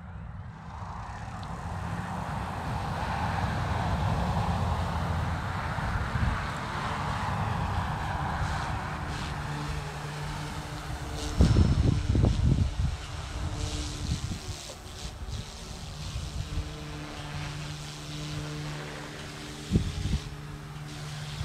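OMPHOBBY M2 V2 micro electric RC helicopter spooling up: a motor-and-rotor whine that rises over the first several seconds, then settles into a steady hum at head speed. Its tail motor has been reversed to quiet the tail, and it sounds a lot quieter. Loud rumbles of wind on the microphone come about eleven to thirteen seconds in.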